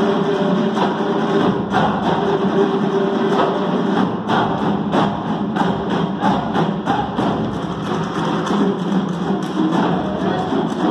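Drum ensemble playing a fast, driving Caucasian dance rhythm: many hand drums struck together in quick clusters of strokes over a steady held note.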